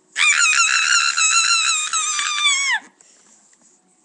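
A boy's very high-pitched, loud mock scream, held for about two and a half seconds with a slight waver, falling in pitch as it cuts off: a deliberate imitation of someone's shrill yelling.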